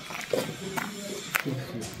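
Quiet, indistinct speech in short fragments, with a few faint clicks.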